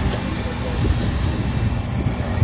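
Heavy road-paving machinery running, a steady low rumble without any single standout event, with voices under it.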